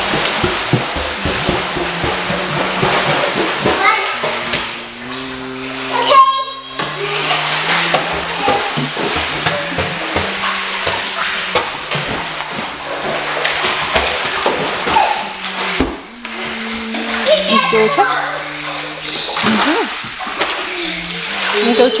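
Indoor swimming pool: water splashing with children's voices in the room, over background music with a slow melody of held notes.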